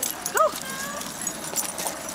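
A dog giving a faint, short whine while dogs run and play on grass, with scattered scuffing and rustle of movement.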